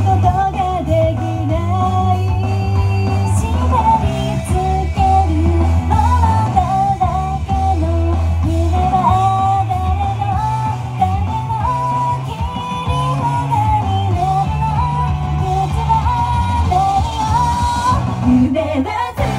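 A young woman singing a pop song into a handheld microphone over loud amplified rock-style backing music with a steady bass line.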